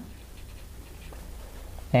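Felt-tip marker writing on paper: a faint, soft scratching as a word is written out.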